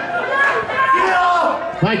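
Men's voices talking, mostly commentary and chatter, with a short knock near the end.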